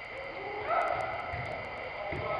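A player's drawn-out shout on the pitch, about a second long, over the steady background of the sports hall.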